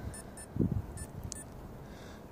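Garmin Forerunner 235 sports watch giving a few faint, short key beeps as its side buttons are pressed to scroll through a setup menu. There is a soft low thump about half a second in.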